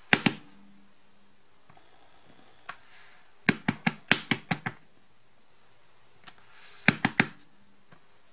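A wood-mounted rubber cloud stamp knocking on the table as it is inked and pressed onto cardstock. There are two knocks at the start, a quick run of about eight taps around the middle as the stamp is dabbed on the ink pad, and three more knocks near the end.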